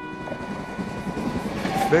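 A train running on rails: a steady rushing rumble that builds toward the end, with the last held notes of background music fading under it.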